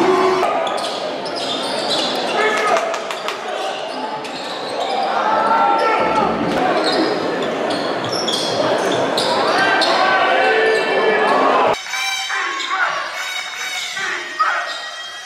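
Basketball game sound in an echoing arena: a ball bouncing on the court under overlapping crowd voices and shouts. The sound changes abruptly about twelve seconds in, when the footage cuts to another game.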